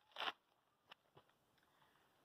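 Near silence, broken by one brief rasp just after the start and a couple of faint clicks about a second in.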